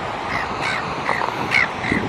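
Gulls giving short, harsh squawking calls in quick succession, about two or three a second, over a steady background rush of surf.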